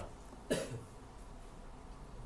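A single short cough about half a second in, then faint room noise.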